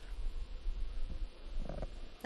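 Uneven low rumble picked up by an open gooseneck desk microphone between sentences, the kind of noise made by breath and handling close to the mic.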